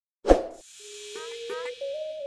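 A single sharp pop sound effect, then a soft hiss and a held electronic tone with quick rising chirps over it: the opening of an intro jingle.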